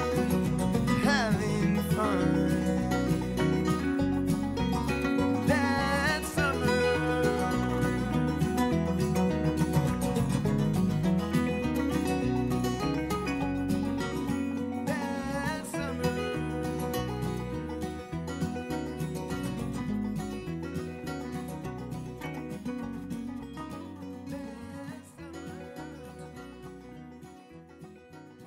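Closing bars of an acoustic pop song: a strummed acoustic guitar with a wordless sung melody near the start and again about fifteen seconds in, the music fading gradually over the last ten seconds.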